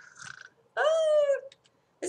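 A single short, high-pitched vocal cry, about two-thirds of a second long, rising and then falling slightly in pitch.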